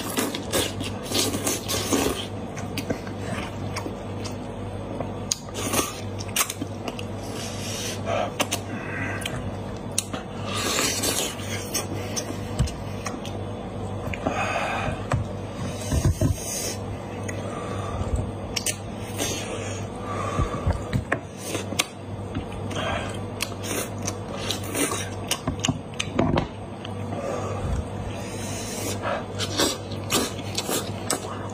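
Close-miked eating of a cooked goat head by hand: meat sucked and slurped off the bones, chewed with wet smacking, and pulled apart, giving many short wet clicks and smacks throughout.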